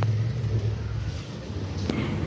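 Low engine rumble of a nearby motor vehicle, fading over the two seconds, with a single sharp click near the end.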